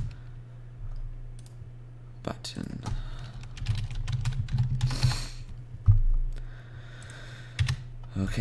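Computer keyboard typing: scattered keystrokes in short runs over a steady low hum, with one louder thump about six seconds in.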